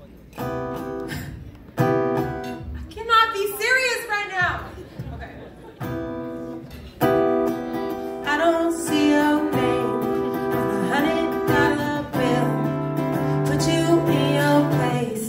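Acoustic guitar chords played live, a new chord every second or two, with a woman's voice singing a bending line over them, first briefly a few seconds in and then again through the second half.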